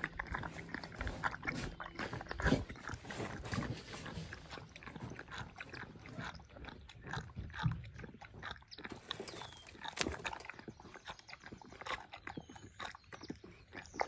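A pig eating leafy greens soaked in liquid from a metal bowl: wet, irregular chewing and slurping with sharp smacks, heavier in the first few seconds and again about ten seconds in.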